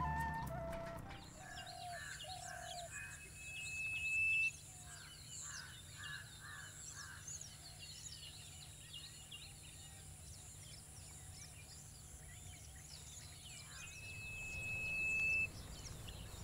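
Many birds chirping and calling, with a four-note call repeated twice. Twice a thin rising whistle builds and then cuts off suddenly. Flute music fades out in the first second.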